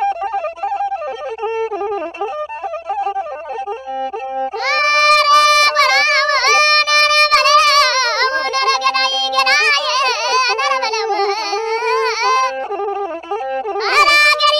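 Amhara traditional music: a single ornamented melodic line with bending, wavering pitch. About four and a half seconds in it turns louder and brighter, in a higher register.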